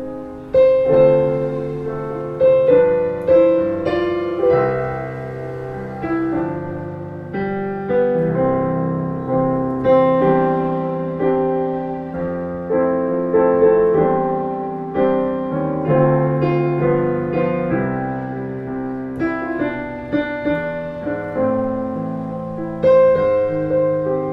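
Yamaha Clavinova CLP-430 digital piano being played: chords and melody, notes struck about once or twice a second and left to ring.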